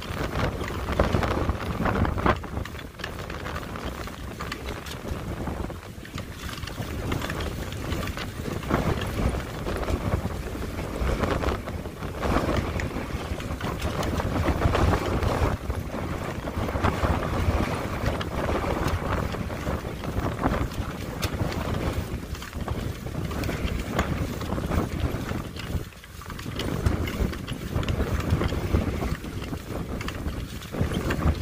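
Storm-force wind gusts buffeting the microphone, a heavy low rumble that swells and eases with each gust, with a short lull about 26 seconds in.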